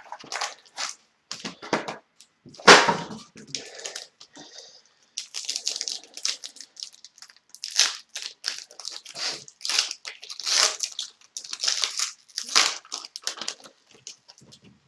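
Foil wrapper of a hockey card pack crinkling and tearing as it is opened, with cards sliding and shuffling in the hands. The sound is a string of irregular short rustles and crackles, with one sharper crackle about three seconds in.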